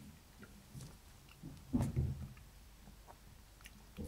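A person quietly chewing a mouthful of sweet milk tea with gelatinous tapioca pearls, with small wet mouth clicks and a louder low mouth sound about two seconds in.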